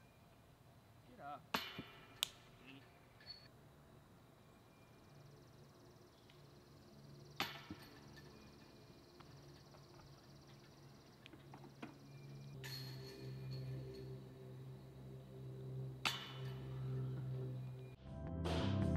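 A few separate sharp impacts, some with a short metallic ring, from disc golf play: discs being thrown and striking, over faint outdoor ambience. Low music fades in over the last several seconds.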